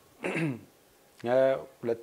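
A man's voice: a short throat clear about a quarter second in, then speech in a small room.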